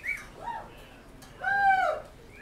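A high, arching whoop-like cry from a voice, the loudest part about one and a half seconds in, preceded by a shorter rising cry.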